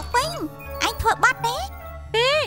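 Cartoon character speech in the Khmer dub over light background music with a tinkling jingle.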